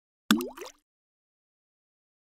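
A single water drop plopping into water, a short plop with a quick upward sweep in pitch.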